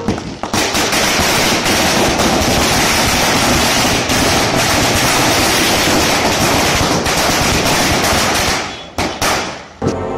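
A long string of firecrackers going off in a dense, rapid run of bangs for about eight seconds. It thins out near the end to a few last separate bangs.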